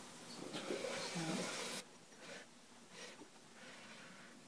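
A Mac Pro tower's aluminium case scraping and rubbing as it is slid across a desk, with clothing rustle. The noise cuts off abruptly about two seconds in, leaving a few faint knocks.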